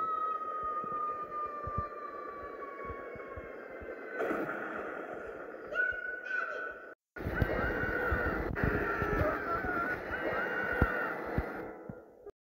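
Cartoon soundtrack: a long high-pitched scream that slowly falls in pitch and fades out over the first few seconds, over the hiss of heavy rain. After a brief dropout about seven seconds in, the rain returns louder, with short high wavering cries or sound effects over it.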